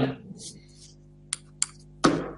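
Two short, sharp clicks about a third of a second apart, over a faint steady low hum.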